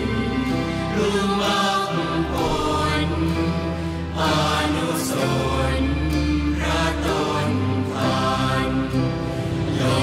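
Thai Buddhist devotional chant in the sarabhanya melody, sung in unison with held, gliding notes over a musical accompaniment that has a steady low bass.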